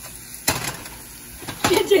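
A single sharp knock about half a second in, over quiet kitchen background, followed by laughter near the end.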